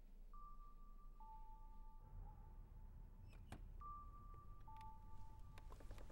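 A faint two-note chime, a higher tone followed by a lower one that overlap and ring on, sounding twice, about three and a half seconds apart. A sharp click comes between the two chimes, and a few more clicks come near the end.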